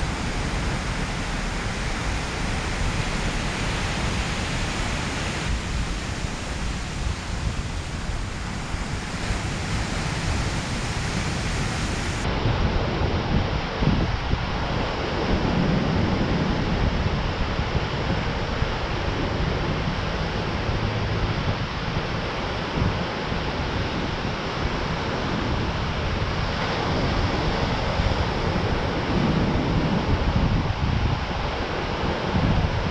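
Ocean surf breaking steadily on a sandy beach, with gusts of wind buffeting the microphone.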